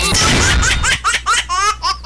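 Dance music cuts off, then a rapid run of high-pitched laughter, about six "ha"s a second, lasting over a second and a half.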